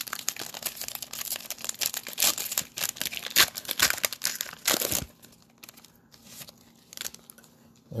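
Foil wrapper of a Panini Mosaic basketball card pack being torn open and crinkled: dense crackling for about five seconds, then a few quieter, scattered rustles.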